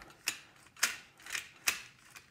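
Four sharp metal clicks from the Kord heavy machine gun mount's charging-handle assembly as it is worked by hand.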